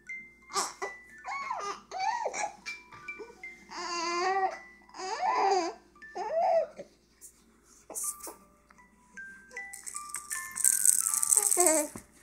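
A young baby coos and babbles in several drawn-out vocal sounds over a musical baby toy playing a simple melody of short chime-like notes stepping up and down the scale. Near the end there is a rattling of about a second and a half.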